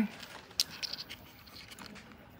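Soft scrapes and a few short clicks of wiring being pushed by hand into a drone's access hatch; the clearest click comes about half a second in.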